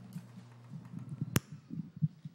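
Lectern microphone being handled and adjusted: irregular low bumps and rustles, with one sharp click about halfway through.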